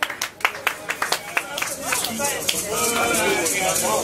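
Scattered audience clapping that dies away about a second and a half in, followed by voices talking and calling out.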